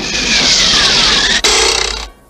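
Cartoon speed sound effect as the snake zooms off: a loud rushing whoosh with a falling whistle through it, changing sharply about one and a half seconds in.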